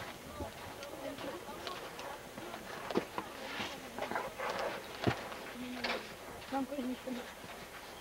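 Faint, indistinct voices talking in snatches, with a few sharp knocks, the loudest about three and five seconds in.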